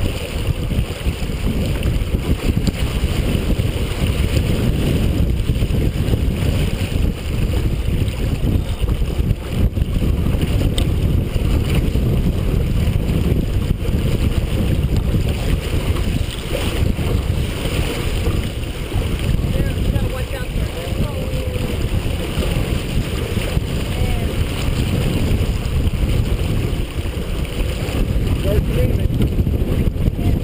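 Wind buffeting the microphone over water rushing and splashing along the hull of a Merit 25 sailboat heeled over and beating to windward. A steady, loud, low rumble with no breaks.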